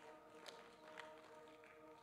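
Near silence: faint background music of steady held chords, with a couple of soft clicks about half a second and a second in.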